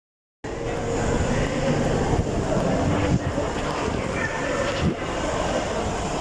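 Shopping-mall background noise: a steady hum of indistinct distant voices and room noise, starting about half a second in.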